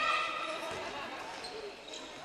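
A handball bouncing on the sports hall floor during play, a few short thuds, with players' and spectators' voices, including a high held shout near the start.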